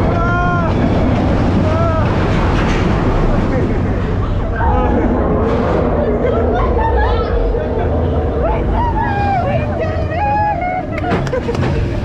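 Roller coaster train running along its track with a dense, loud rumble, while riders give high-pitched shouts and screams over it.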